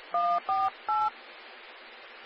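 Three short touch-tone (DTMF) dialling beeps, each a pair of tones, sent over a railroad radio channel heard on a scanner, in quick succession in the first second. Steady radio hiss follows, with the squelch held open.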